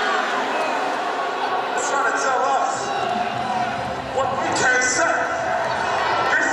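A dance routine's soundtrack played over the hall speakers: a man's voice talking, with sharp thudding hits, and a deep bass that comes in about three seconds in.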